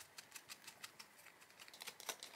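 A run of faint, irregular small clicks as a small hex key turns a screw to take the back plate off an ElevationLab TagVault: Pet AirTag holder.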